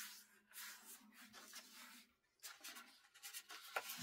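Faint rustling and scraping of 6x6 patterned paper being unfolded and refolded by hand, with a few short scrapes in the second half.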